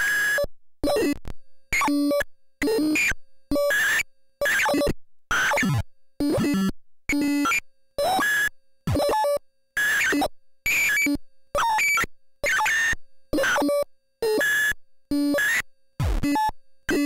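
Homemade CMOS oscillator circuit built around a CD4023 pulse-width-modulation oscillator, playing a clocked sequence of short electronic tone bursts, about two a second, with silent gaps between them. Each burst lands on a different pitch, some sweeping down, as the pseudo-random control voltage changes the oscillator's feedback resistance.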